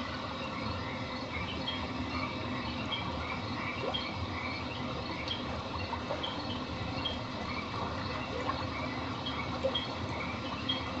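Pond night ambience: a steady chorus of frogs and insects, with short high chirps repeating every half second or so.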